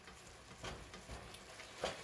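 Ground beef with onion and green pepper faintly sizzling in a stainless steel skillet, with a few light taps of a spatula in the pan, the loudest near the end.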